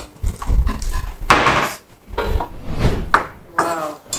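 A woman's voice making loud wordless exclamations in a few separate bursts, with short pauses between.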